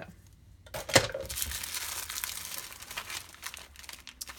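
Clear plastic bag crinkling as it is handled and opened and packets of coffee and tea are pulled out of it, with one sharp snap about a second in.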